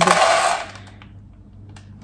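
Dry cat food kibble poured from a glass into a plastic tub, a rattling rush of pellets that lasts under a second and then dies away.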